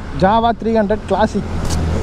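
A person speaking for about a second, then a noisy stretch with a steady low rumble and a brief hiss near the end.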